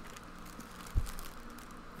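A single dull, low thump about a second in, over a steady background hum.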